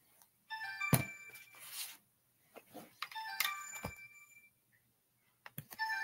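A melodic phone ringtone of several chiming notes sounding three times, about every two and a half seconds, with two sharp clicks: an incoming call to the call-in line.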